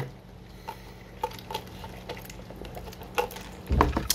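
Someone sipping Coke from a lidded fast-food cup, with a few faint small clicks, then a low thump near the end.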